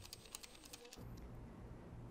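Near silence: a few faint clicks in the first second, then a faint low steady hum of room tone.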